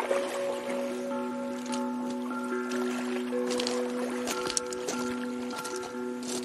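Steel tongue drum struck with mallets: several notes sounded one after another, each ringing on long and overlapping with the others in a soft, sustained chord.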